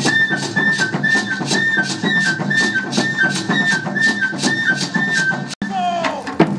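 Live West African drum ensemble, with djembes and barrel drums, playing a steady beat of about four strokes a second. Over it runs a high, piping two-note melody that repeats. The sound cuts out for an instant near the end and resumes with a different mix.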